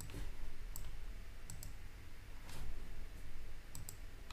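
About six sharp computer clicks at irregular intervals, two of them in quick pairs, as the computer is worked to open a terminal, over a faint steady low hum.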